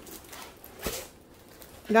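Diamond painting canvas and its plastic cover film rustling as it is handled, with one sharper crinkle a little under a second in.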